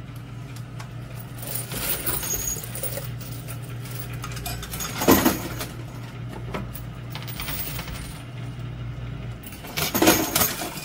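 Coin pusher arcade machine running: scattered clinks of coins and tokens over a steady low hum, with one louder clank about five seconds in.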